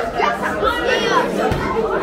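Children's high voices chattering, several at once.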